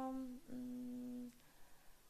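A woman's voice drawing out the end of a word, then a hummed 'mmm' of hesitation held at one steady pitch for under a second, followed by a brief pause.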